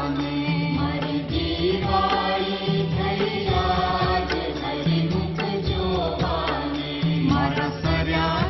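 Hindu devotional chanting sung to a melody with instrumental accompaniment: a low held note that shifts every second or so under the voice, and frequent light percussive strikes.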